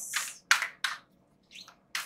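An oversized tarot deck being shuffled by hand: several short papery swishes and slaps as the cards slide against each other, with a brief pause partway through.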